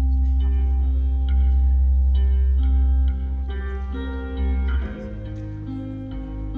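Live band playing a slow instrumental passage: piano over a loud, deep held bass line, with long sustained notes above it. The music drops a little in level about five seconds in.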